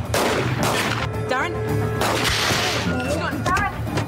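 Several handgun shots, sudden sharp reports each trailing off in echo.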